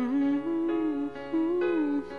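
A woman humming a slow, gliding melody over sustained piano chords: the wordless opening of a ballad, just before the first sung line.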